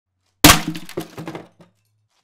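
Samsung PS-WJ450 subwoofer slamming onto concrete: one loud crack about half a second in as its plastic base panel breaks away, then a second or so of smaller knocks and clattering as the pieces settle.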